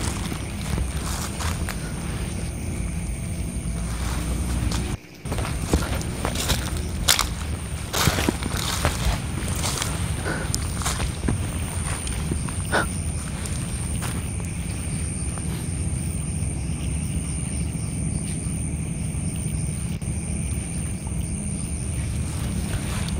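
Footsteps crunching and rustling through dry leaf litter and undergrowth, with scattered clicks and brushing, over a steady high-pitched drone. The sound cuts out briefly about five seconds in.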